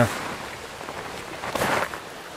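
Steady rush of flowing stream water, with a short, louder rustle near the end.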